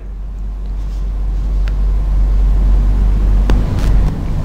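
A steady low hum that grows slightly louder, with a few faint clicks near the middle and end.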